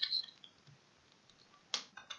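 Two faint, short clicks of a computer mouse, one at the start and one near the end, over low room hiss.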